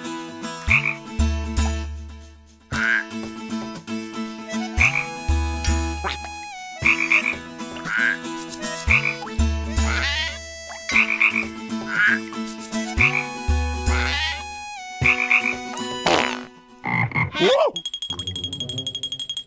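Cartoon frog croaking in a rhythmic, tune-like pattern: deep low croaks about every four seconds with shorter, higher calls between them. The pattern breaks off near the end.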